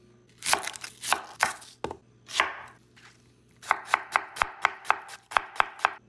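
Chef's knife dicing an onion on a wooden cutting board. There are a few slicing cuts in the first couple of seconds, then after a short pause a fast, even run of chops, about four to five a second.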